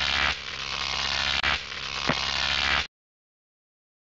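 Logo-sting sound effect: a steady noisy rush over a low hum, with two sharp hits, cutting off suddenly about three seconds in.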